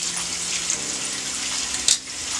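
Bathroom faucet running steadily into a sink while hands rub under the stream, rinsing off a sugar scrub, with a brief sharper splash just before the end.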